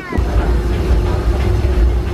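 Disneyland Railroad passenger car running along the track: a low rumble that swells in just after the start, with a steady mid-pitched hum running underneath.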